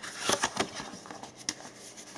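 Hands handling and opening a thin black cardboard folder: soft rustling and scraping of card with a few light taps, the sharpest about one and a half seconds in.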